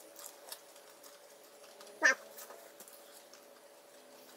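Quiet pause while two people chew bites of a biscuit sandwich, with faint soft ticks near the start. About halfway through comes one short vocal sound that drops sharply from high to low pitch.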